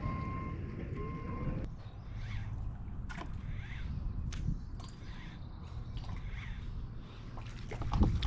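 Outdoor lake ambience: a steady whine cuts off abruptly about a second and a half in. Low wind and water noise follows, with faint bird chirps and two sharp clicks.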